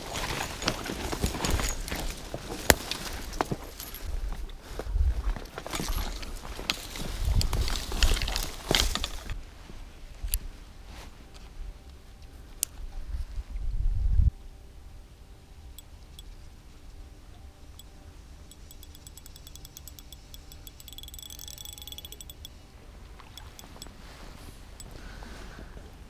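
Footsteps and brush rustling as someone pushes through dry leaf litter and twiggy undergrowth for about nine seconds, full of snapping and crackling. About fourteen seconds in there is a loud low knock, followed by a quieter stretch with a faint, fast ticking a little past twenty seconds.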